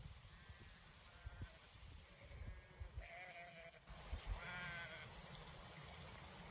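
Sheep bleating faintly, a string of short calls with the two clearest about three and four and a half seconds in. Low gusty wind rumble on the microphone runs underneath.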